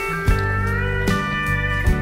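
Background music: a sliding guitar melody over a steady low beat, with a thump a little under a second apart.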